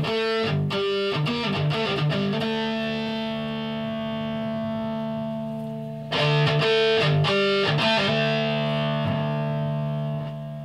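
Electric guitar played through an FJA-modified CE amp kit head: a quick run of picked chord stabs, chords left to ring, then a second burst of stabs about six seconds in that rings out and starts to fade near the end.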